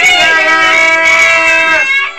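Several children's voices in one long, high-pitched, drawn-out shout held steady for almost two seconds, breaking off near the end.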